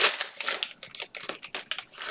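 Plastic cello-pack wrappers of trading cards crinkling as the packs are handled and opened. The crinkling is loudest at the start, thins to sparse crackles in the middle and picks up again near the end.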